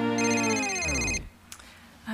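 A mobile phone ringtone rings over the music, which slows and slides down in pitch like a tape winding to a stop. Both cut off just over a second in.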